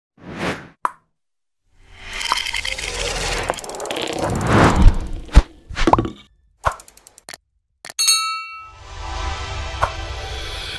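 Sound effects for an animated title sequence: a short swell and a click, then a long rising swell that peaks with a sharp hit about five seconds in, followed by several quick clicks and hits. About eight seconds in a bright ringing chime-like strike, then a swelling whoosh near the end.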